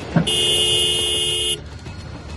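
A car horn sounds once, steadily, for about a second and a half, with two close notes held together. A short knock comes just before it.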